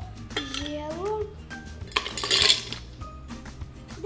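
Six ice cubes tipped from a drinking glass into an empty blender jar, clattering against the jar for about half a second near the middle.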